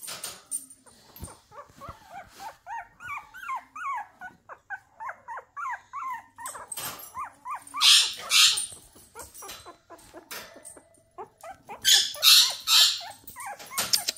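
Puppy whimpering: a quick run of many short, high-pitched squeaks that bend up and down. Later there are a few louder, short, noisy bursts.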